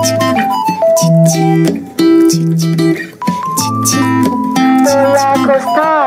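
Instrumental break in a Korean indie-pop song: guitar with a bass line and a lead melody, the loudness dipping briefly twice around the middle.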